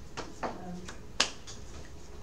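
Three short, sharp clicks, the loudest just past a second in.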